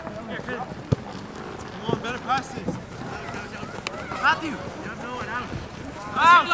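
Shouts and calls from soccer players and the sideline during play, several voices from about two seconds in and again near four seconds, with one sharp knock about a second in.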